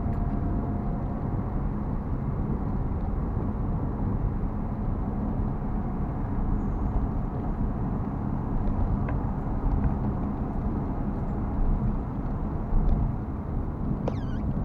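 Steady road noise of a car driving at highway speed, heard from inside the cabin: a continuous low rumble of tyres and engine.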